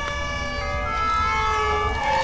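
Several emergency-vehicle sirens sounding at once, their tones holding, stepping and sliding in pitch, over a steady low rumble.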